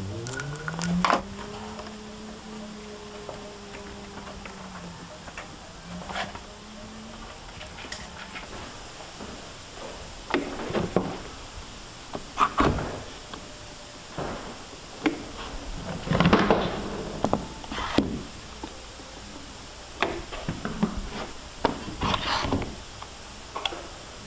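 Bessey DuoKlamp one-handed squeeze clamps being set along a door's bottom edge and squeezed tight on a glued-in plug: a run of irregular clicks, clacks and rasps through the second half. For the first five seconds a steady low tone is held.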